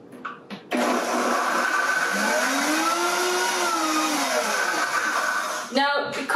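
Vitamix high-speed blender starts about a second in and runs for about five seconds, blending a thick avocado crema; its motor pitch rises and then falls again before it cuts off.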